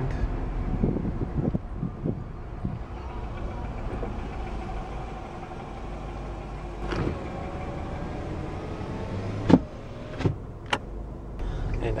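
Inside a car cabin: the engine runs with a steady low rumble as the car rolls slowly into a parking space. A few sharp clicks and knocks come in the last third, the loudest about nine and a half seconds in.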